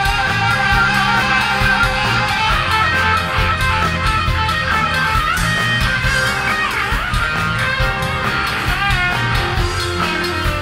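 Electric guitar solo on a Stratocaster-style guitar, with held notes and string bends that dip and come back up in pitch, over the bass and drums of a live rock band.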